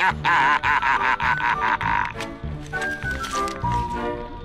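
A cartoon crab character's cackling laughter in quick pulses for about two seconds, over background music. The music then carries on alone, with held notes over a regular bass beat.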